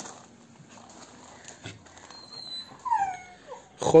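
A dog whines in a few short, falling cries about three seconds in, over faint scuffling of paws in loose soil.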